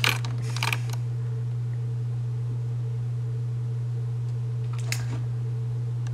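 A steady low hum, with a few short clicks at the start and again about five seconds in.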